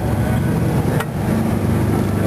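Steady low rumble of street traffic, with one sharp knock about halfway through, a knife blade striking a wooden cutting board.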